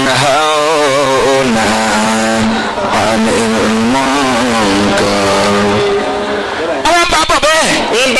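A man's voice chanting melodically through a microphone, holding long, wavering notes with few pauses.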